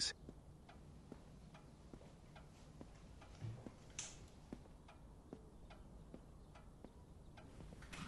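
A clock ticking faintly and steadily in a quiet room, a little over two ticks a second, with a soft rustle and bump near the middle as someone settles into a chair.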